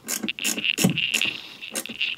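Sharp metallic clicks of a box-end wrench turning a lithium battery's terminal nut, coming in a series about every third of a second, over a steady high-pitched drone.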